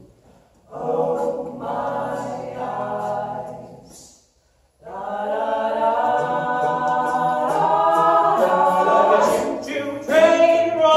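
Young men's a cappella group singing held chords in close harmony, without clear words. The singing stops briefly just before a second in and again about four seconds in, then returns as a fuller chord that shifts pitch near the end.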